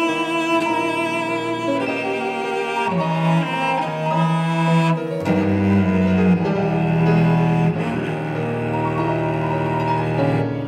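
Classical chamber music for bowed strings, with long held notes. Sustained low notes come in underneath about three seconds in.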